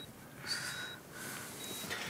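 Bedside patient monitor beeping a short high tone about once a second, sounding twice, with a soft breath about half a second in.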